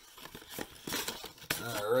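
Plastic packaging crinkling, with a run of light clicks and clatters of hard plastic pieces being handled while the box is emptied.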